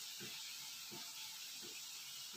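Faint, steady sizzle of snack pieces deep-frying in hot oil in a steel kadai, with a few soft low taps.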